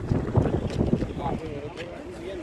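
Wind buffeting the microphone in gusty low rumbles, with faint voices talking in the background during the second half.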